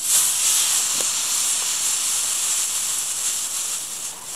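Leftover scraps of potassium nitrate and sugar smoke mix, mostly the lower-nitrate batches, burning with a loud, steady hiss that tapers off just before the end.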